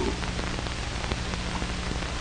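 Steady hiss with faint scattered crackles and a low hum: the surface noise of an old film's optical soundtrack, heard with no speech or music over it.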